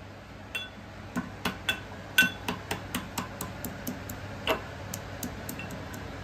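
Steel pestle pounding garlic cloves in a small steel mortar: a run of sharp, ringing metallic taps, about four a second, starting about half a second in.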